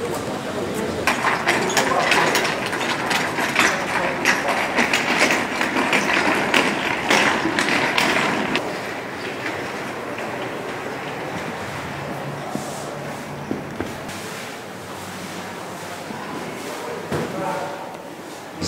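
Indistinct voices of people nearby with scattered clicks and knocks, busiest in the first half and quieter after about nine seconds.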